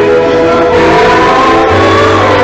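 Christian choral music, voices and accompaniment holding long sustained notes at a steady, loud level.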